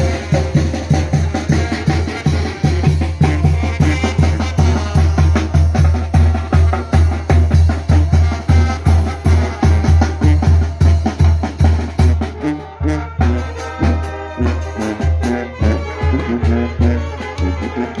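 Mexican village brass band playing: bass drum and snare keep a steady beat under a sousaphone bass line, saxophones and trombones. About twelve seconds in the drumming eases and the horns come forward.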